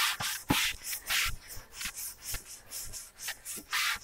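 A damp cloth rubbed along a freshly sanded wooden oar in a quick series of irregular wiping strokes, wiping off the sanding dust before varnishing. A couple of short knocks sound in the first second or so.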